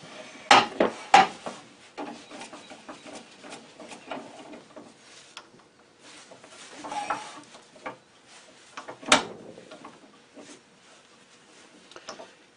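Metal knocks, scrapes and clicks from a wood lathe being set up: the tool rest is shifted, and the tailstock with its cone center is slid up to a small wood blank and snugged up. A sharp click about nine seconds in is the loudest sound.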